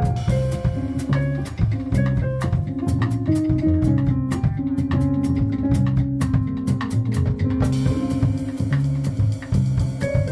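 Live jazz piano trio: upright bass, a stage keyboard playing a melodic line, and a drum kit with cymbals and drums keeping time. The cymbals get busier about eight seconds in.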